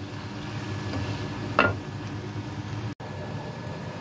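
Mutton pieces and ground spices frying in oil in a pan, a steady sizzle, stirred with a wooden spatula: the masala being browned (bhunai) with the meat before water goes in. The sound cuts out for an instant near three seconds in.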